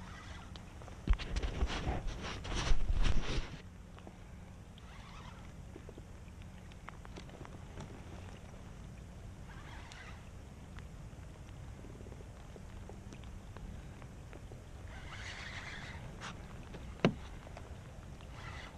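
Low water and hull noise around a kayak on open water. About a second in it is broken by two seconds of loud, rough handling noise, and a single sharp click comes near the end.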